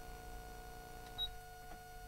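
A single short, high electronic beep about a second in, over a steady hum from the hall's sound system.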